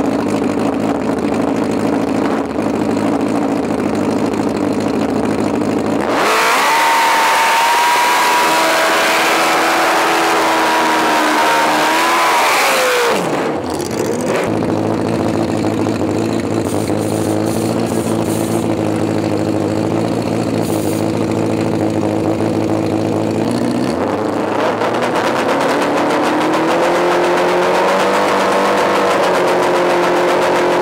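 Drag-racing motorcycle engines idling, then one is revved high and held for about seven seconds with a loud rushing noise before dropping back to idle. Near the end the revs climb again.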